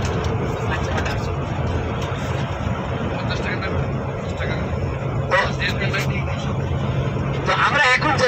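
Steady low drone of a vehicle's engine and tyres heard from inside the moving vehicle, with people talking now and then, most loudly near the end.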